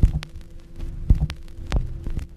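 Instrumental backing of a song with no voice: a kick-drum beat, roughly two thumps a second, with sharp clicks over a steady held low note.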